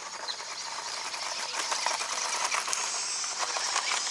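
Toy RC off-road buggy running across loose gravel: a steady hiss of tyres on stones, dotted with many small clicks of scattered gravel, growing louder as the car comes closer.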